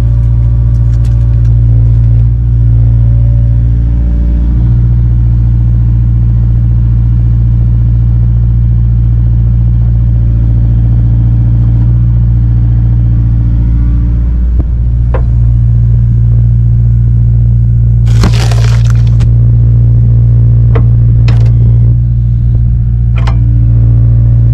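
Steady engine drone from a Kubota mini excavator working a hydraulic log-splitting attachment, its pitch sagging briefly twice under load. Oak and cherry rounds crack apart: a sharp crack just past the middle, a loud splitting burst a little later, then a few smaller cracks.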